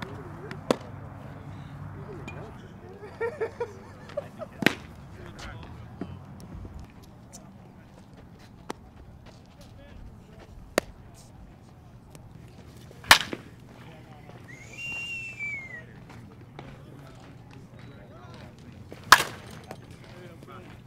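Sharp, isolated cracks and pops of baseballs striking catchers' mitts and bats during practice, about five loud ones spread out, the loudest near the middle and near the end, over a steady outdoor background with faint voices. A brief high chirp rises and falls about fifteen seconds in.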